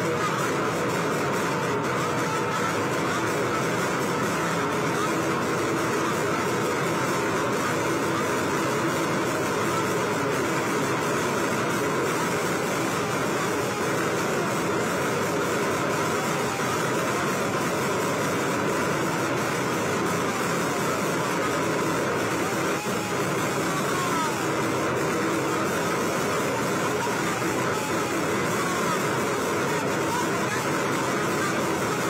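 Steady din of a large, dense street crowd, many voices blending at once, with music mixed in.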